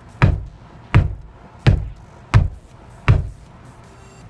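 Five knocks, about one every 0.7 seconds: the base of a wine bottle held in a Converse sneaker struck against a wall that is not brick, the shoe trick for pushing out a cork without a corkscrew. The cork is not moving.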